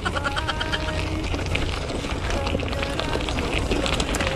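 Mountain bike rolling down a loose, rocky gravel trail: tyres crunching over stones, with a fast, steady rattle from the bike and a low rumble throughout.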